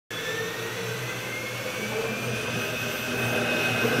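Daniatech ProcessMaster 500L process vessel's high-shear mixer motor running steadily while emulsifying starch into fresh cheese, a whine with a steady hum beneath it. The whine rises slowly in pitch over the first few seconds.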